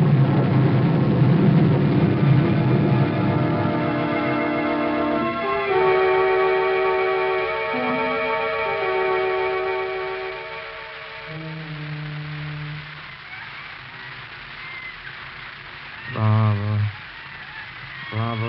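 Studio organ music bridge: sustained held chords that shift about five seconds in, then thin to a few low notes and fade out about two-thirds of the way through.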